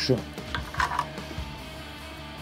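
Soft background music with a steady low drone, over a few light clicks as a short wire is handled and set against the lugs of the potentiometers on a guitar pickguard.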